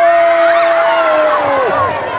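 A male football commentator's long, drawn-out shout of 'goal', held on one pitch and falling away near the end, over a crowd cheering.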